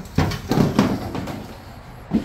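A few knocks and clatters of a plastic riding-mower hood being handled and set aside, mostly in the first second, then quieter.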